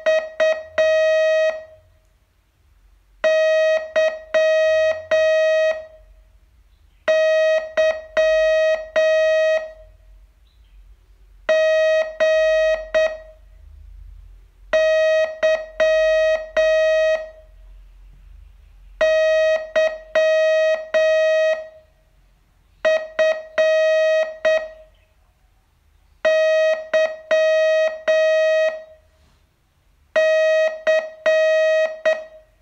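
Morse code sent as a single steady tone, keyed on and off in dots and dashes, for a slow receiving exercise. It comes in about eight word-groups, each two to three seconds long, with a pause of a second or two between them.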